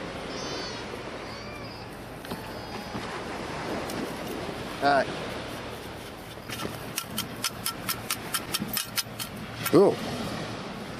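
Perforated stainless steel sand scoop being shaken, sifting sand, with a quick run of rattling clicks about five a second in the last few seconds. A steady wash of surf and wind underneath.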